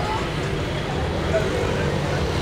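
Steady street traffic noise with motorcycle engines running on the road, and faint voices in the background.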